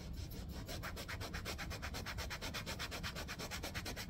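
A paintbrush scrubbed rapidly back and forth on a stretched canvas, about eight scratchy strokes a second, stopping abruptly at the end.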